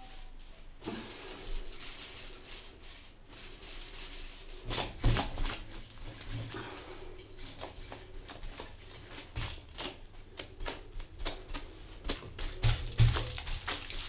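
Handling noise from gluing lace onto a foil-covered mannequin head: a steady stream of irregular crinkles and clicks as the brush, foil and gloved hands work the lace. A few louder knocks come around five, nine and thirteen seconds in.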